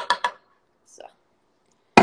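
Kitchen knife knocking and scraping against a wooden cutting board as chopped chocolate is pushed off it: a quick run of sharp knocks at the start and one loud knock at the end.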